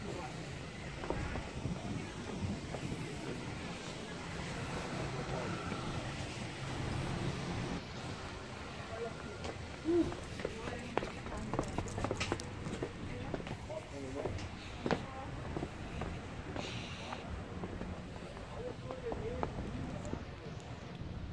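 Outdoor street ambience: wind rumbling on the microphone, with scattered footstep-like clicks and indistinct voices in the background.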